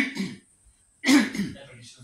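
A man coughing and clearing his throat in two sharp bursts, one right at the start and another about a second in, with a short silence between.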